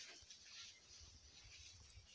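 Near silence, with only a faint low rumble.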